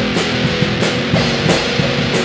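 Lo-fi indie pop band music: a drum kit keeping a steady beat under guitars and bass, an instrumental stretch with no vocals.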